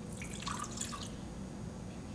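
Water poured from a glass cruet into a chalice: a short trickle and splash just under a second long, starting right away.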